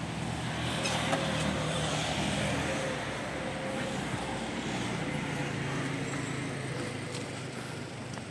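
City road traffic: a motor vehicle's engine running close by, growing louder about a second in and then easing off as it passes.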